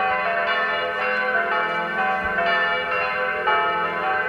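Church bells ringing in a tower, several bells struck one after another about twice a second, each new strike sounding over the ringing of the last.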